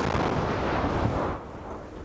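Controlled detonation of a mid-20th-century aerial bomb: the blast, set off just before, still loud and reaching deep into the bass, then dying down after about a second and a half.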